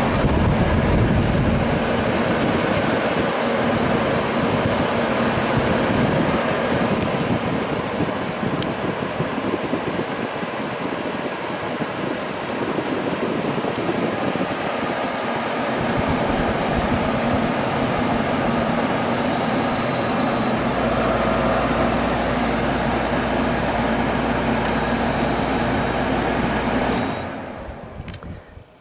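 Koldfront 12,000 BTU through-the-wall air conditioner running, its fan blowing air steadily. About two-thirds of the way through, a low hum joins in. The sound falls away just before the end.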